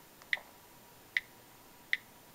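Key clicks from an iPod Touch's on-screen keyboard as a search word is typed: three short, sharp ticks with the same pitch, at uneven intervals.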